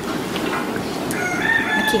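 A rooster crowing once, a long held call that starts about a second in.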